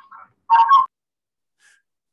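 A short voice sound from a person over a video call in the first second, then silence.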